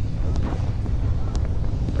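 Steady low rumble of an aircraft's engines in flight, with a few faint knocks.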